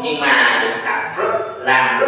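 A man's voice talking.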